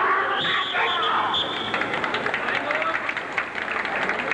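Arena crowd at a karate bout: shouting voices in the first second and a half, then scattered sharp claps and clicks over the crowd's background noise.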